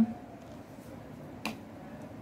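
Low room noise with one sharp click about one and a half seconds in, from handling a hot glue gun while glue is run onto a piece of EVA foam.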